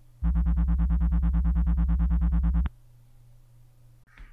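Computer-generated beat signal played through MATLAB's sound function: a low, buzzy tone that throbs about nine times a second as two nearby frequencies drift in and out of step. It starts about a quarter second in and stops abruptly after about two and a half seconds.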